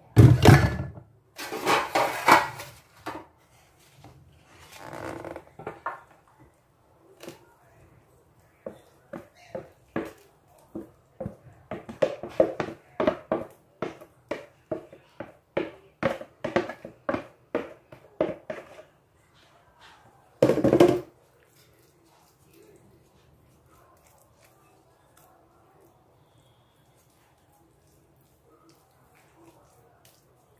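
Wooden spoon scraping and knocking thick chicken-pie batter out of a plastic tub into an aluminium baking pan: a loud thunk right at the start, a fast run of short scrapes through the middle, and one more loud knock about two-thirds through, then only faint spreading sounds.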